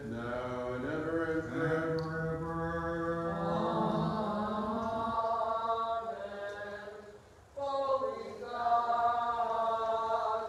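Byzantine liturgical chant: voices singing long held notes that step from pitch to pitch, over a low sustained tone for the first half. The singing drops away briefly about three-quarters of the way through, then resumes.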